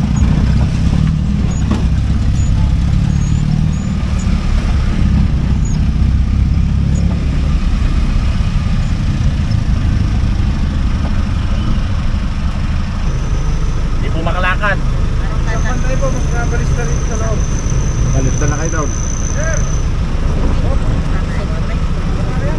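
A vehicle's engine running, heard from inside the cabin as a steady low rumble, heaviest in the first several seconds as it drives in and easing slightly as it slows to a stop.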